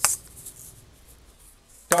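Asalato: a sharp click as the spinning ball is struck against the held ball from below to reverse its rotation, then a faint swish as it spins on the cord, and a second click near the end as the direction is changed from the top.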